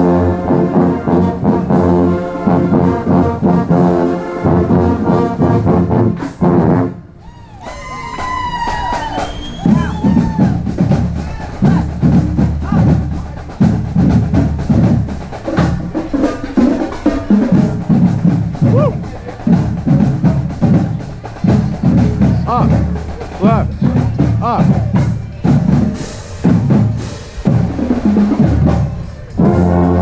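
Marching band brass, with a trombone close by, playing a tune that cuts off about seven seconds in. The band then walks on amid talking voices and scattered knocks and squeals, and the brass starts playing again near the end.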